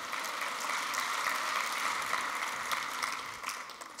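Audience applauding, many hands clapping together; the clapping dies away near the end.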